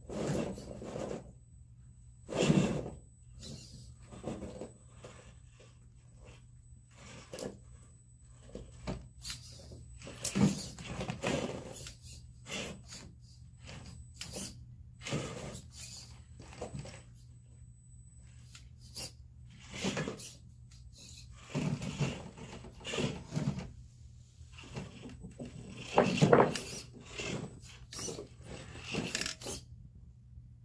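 GMade R1 RC rock crawler climbing over logs and rocks: irregular knocks, scrapes and clatters as its tyres and chassis work over wood and stone, with short stop-start bursts of the drivetrain. Two of the knocks stand out as loudest, one near the start and one a few seconds before the end.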